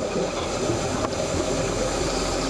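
A steady rushing noise with a low hum beneath it, with no distinct events.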